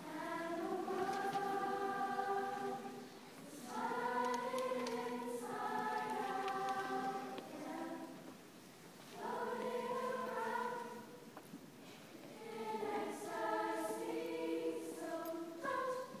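Choir singing in harmony, in long held phrases with short breaks between them every few seconds.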